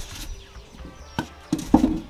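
A stainless steel mixing bowl handled on a wooden table: a sharp knock a little after a second in, then a short, louder clatter near the end.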